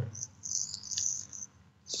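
Faint, patchy high-pitched hiss with a brief tick about halfway, in a pause between words of a talk carried over a Skype call.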